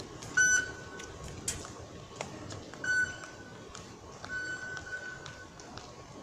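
Metro fare-gate card reader beeping as a nol card is tapped on it: a short beep about half a second in, another near three seconds, and a longer, fainter one from about four to five and a half seconds. A few sharp clicks come in between.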